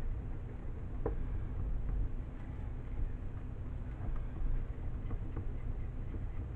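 A silicone spatula stirring soap batter in a plastic measuring cup, with faint scrapes and a few light taps against the cup's side, over a steady low hum.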